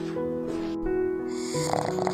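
Background music with sustained notes, and near the end a pug snoring.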